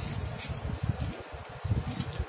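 Handling noise of a new stethoscope's chestpiece as its clear plastic protective wrap is taken off: irregular low rubbing and bumping.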